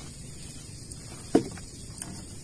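Steady low hiss of night-time outdoor ambience, with one short, sharp sound about a second and a half in.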